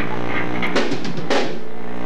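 A rock drum kit struck twice, about half a second apart, loud hits with a ringing cymbal-like smear, over a steady low hum.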